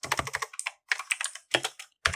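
Typing on a computer keyboard: a quick run of keystrokes, then a few separate taps in the second half.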